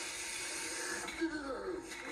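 Steady hiss, then a quiet voice from a video playing back, starting about a second in.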